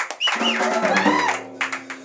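Electric guitars sounding sustained notes that ring on, with a few percussive clicks, as the band starts to play.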